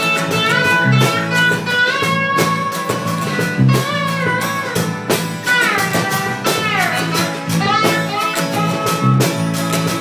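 Guitars playing in a live jam: a lead line with notes that bend up and down in pitch over a low, repeating note pattern, with sharp regular hits keeping time.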